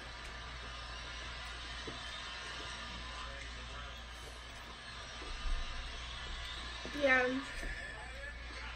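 Quiet eating sounds as corn on the cob is bitten and chewed, over a steady low hum, with a soft low bump about five and a half seconds in.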